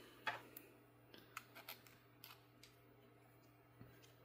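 Faint, scattered small clicks as a metal-threaded pneumatic push-to-connect fitting is handled and screwed into a 3D-printed plastic Y adapter.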